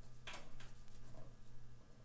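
A small paintbrush working on sketchbook paper: one short scratchy stroke about a quarter second in, then a couple of fainter taps, over a steady low hum.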